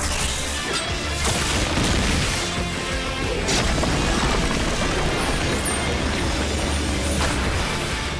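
Cartoon power-up sequence: dramatic soundtrack music under layered magical sound effects, with heavy booms and crashes as stone armour forms. Sudden hits land about a second in, at two and a half and three and a half seconds, and again near the end, with a brief high falling whistle midway.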